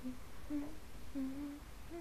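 A person softly humming a few short low notes, three or four brief 'mm' sounds spaced about half a second apart.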